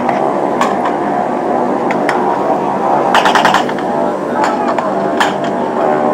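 Battle sound effects: a steady drone of aircraft engines overhead, with scattered single gunshots and a short rapid burst of gunfire about three seconds in.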